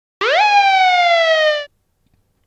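A single police siren whoop: a quick rise in pitch, then a slower downward glide, cutting off after about a second and a half.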